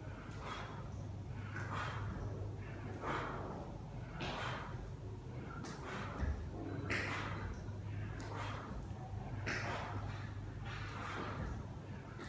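A man breathing hard in rhythm with shoulder-tap push-ups: about ten short, forceful breaths, a little over a second apart, one with each rep. Under them runs a steady low hum.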